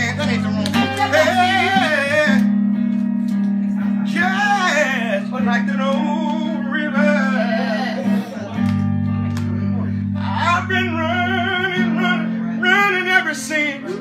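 A man's voice sings wordless, melismatic phrases over a guitar's held chords, with bass notes that shift every few seconds.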